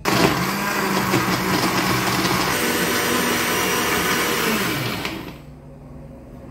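Electric countertop blender blending a banana and apple milkshake. It starts abruptly and runs at a steady pitch for about five seconds, then is switched off and spins down.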